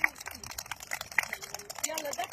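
A group of young children's voices chattering and calling out, with many short sharp clicks or taps mixed in.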